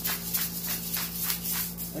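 Hand-twisted pepper grinder grinding peppercorns: a gritty crunch about four times a second, one with each twist, over a steady low hum.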